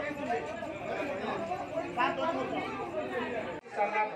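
Speech only: a man talking into a microphone with overlapping crowd chatter. Near the end the low background hum cuts off abruptly and the voices carry on.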